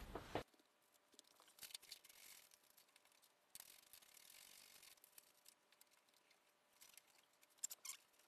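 Near silence, with faint scattered clicks and rustling, and a few sharper clicks near the end.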